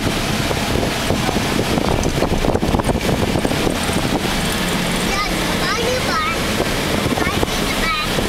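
Cab noise of a vehicle driving over a rough, broken road: continual rumbling and jolting from the tyres and suspension, mixed with wind and a low engine drone.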